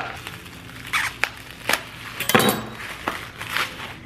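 Plastic bag and paper wrapping being handled on a countertop, giving a series of short rustles and crinkles with a few light clicks and knocks.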